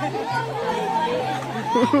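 Several people chattering over background music with a steady bass line, with a laugh near the end.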